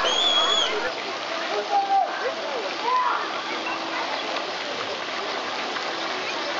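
Steady rush of running water from the pool's fountains and water features, with scattered shouts and voices during the first three seconds.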